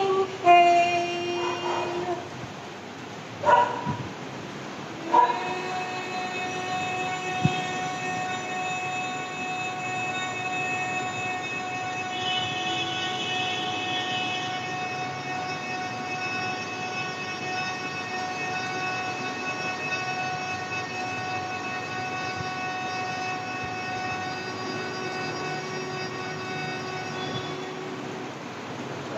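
A woman's voice humming one long, steady note at a single pitch for over twenty seconds, starting about five seconds in after a few shorter hummed tones: the humming breath of a pranayama practice.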